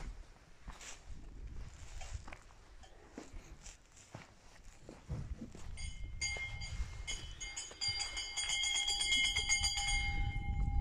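Wind rumbling on the microphone, joined about six seconds in by a steady high ringing tone with several overtones that holds to the end.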